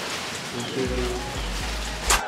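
Steady hiss of rain, with faint voices in the background.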